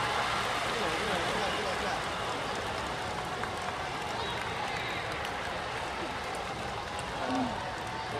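Large stadium crowd: a steady din of many overlapping voices from the packed stands.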